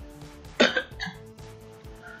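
Quiet background music with faint steady held tones, and a short vocal sound from the narrator between sentences just over half a second in.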